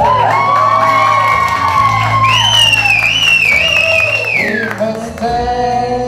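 A song with backing accompaniment, its voice holding long notes: one held for about two seconds, then a higher wavering note that slides down near the end, with some whoops from the audience.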